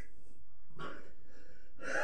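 A man's heavy breaths with the effort of each crunch rep, two short gasping breaths about a second apart.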